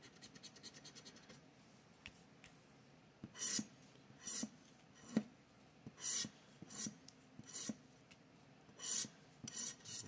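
A plastic scratcher tool scraping the coating off a scratch-off lottery ticket. It starts with a quick, fluttering run of light rubs, then comes about nine short separate scrapes, each under a second apart.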